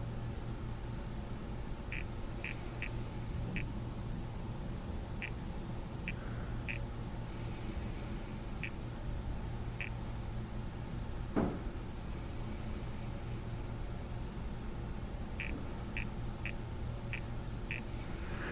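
Quiet room tone with a steady low hum, broken by short high chirps that come in small clusters, and one brief downward-gliding sound a little past the middle.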